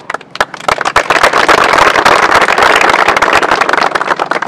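A group of people clapping: a few scattered claps at first, swelling within about a second into thick, steady applause.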